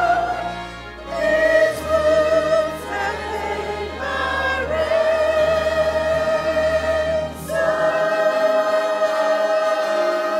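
Church choir of mixed men's and women's voices singing a hymn in long held notes, with short breaks between phrases. A steady low accompaniment note sounds underneath and stops about eight seconds in.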